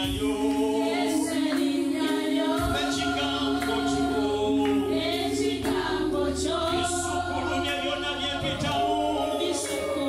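A man and a woman singing a slow gospel worship song into microphones, in long held notes that glide between pitches, over a steady low hum.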